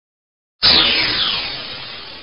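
A sudden whoosh about half a second in: a burst of noise whose pitch falls as it fades, then cuts off abruptly.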